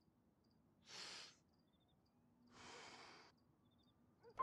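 Faint breath sounds of a man drawing on a glass pipe: a short breath in about a second in, then a longer breath out at about two and a half seconds.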